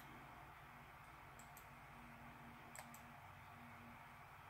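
Faint clicks of a computer's pointer button, two quick pairs, over near-silent room tone with a faint low hum.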